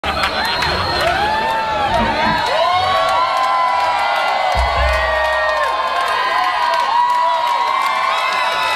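Club audience cheering and whooping, many voices overlapping, with a low boom about four and a half seconds in.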